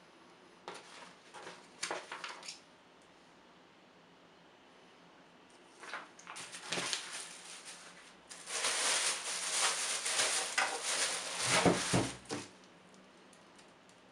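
Thin plastic wrapping crinkling and rustling in bursts as it is handled and pulled off a boxy UPS unit, with a few shorter rustles near the start and the loudest, longest crinkling, about four seconds, in the second half.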